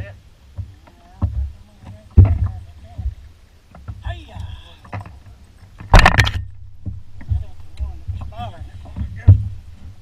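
Knocks and thumps on a bass boat's deck as an angler moves and handles his gear, with three loud bangs, about two, six and nine seconds in; the one at six seconds is the loudest. A voice calls out briefly in between.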